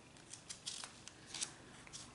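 Sheets of drawing paper being handled and moved over a table, giving a few short, crisp paper rustles; the loudest comes about one and a half seconds in.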